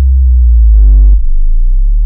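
Loud, deep synthesized bass drone in the soundtrack, used as a cinematic transition. About a second in there is a brief higher tone, and thin tones rise slowly in pitch through the second half.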